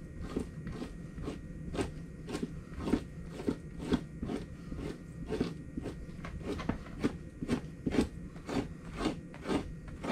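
Two-handled fleshing knife scraping fat and membrane off a beaver hide stretched over a fleshing beam. The scraping comes in short, even strokes about twice a second.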